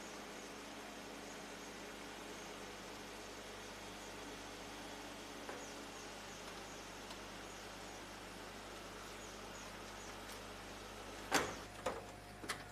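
Faint steady background hiss with small high chirps every so often, then a sharp knock near the end followed by a second, smaller one.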